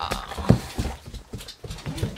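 A dog moving about at close range: a string of irregular knocks and clicks from its paws and body, with one louder thump about half a second in.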